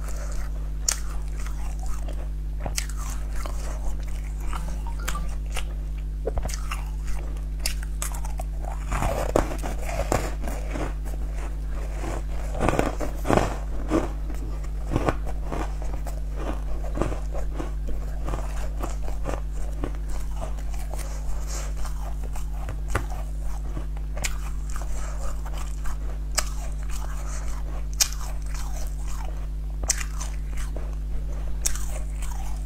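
Close-miked mouth sounds of a person biting and chewing food, with many short sharp crackles, busiest from about nine to fifteen seconds in. A steady low hum runs underneath.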